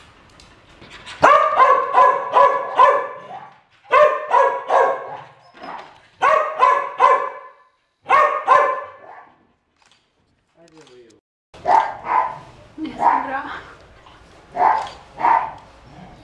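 Dog barking in quick runs of four or five barks, four runs in the first nine seconds; after a short silence, more scattered barks and yelps.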